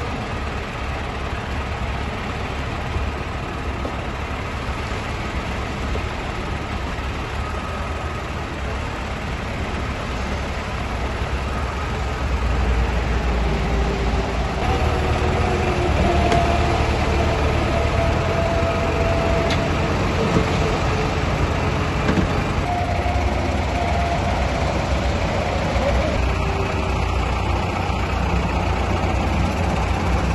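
A tow truck's engine running steadily, growing louder about twelve seconds in, while its crane hauls a van up by cable.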